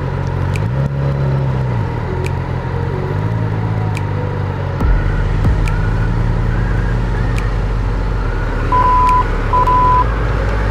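Motorcycle engine running at low road speed, its note rising and falling with the throttle, recorded on a GoPro Hero 2 whose audio carries scattered sharp crackles. Two short high beeps sound near the end.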